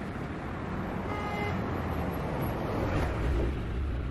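Road traffic with motor vehicles driving past, a steady noise of engines and tyres. A short pitched tone sounds about a second in, and a deeper engine rumble swells near the end as a bus passes close.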